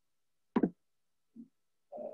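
A single short knock, then a faint low thud less than a second later.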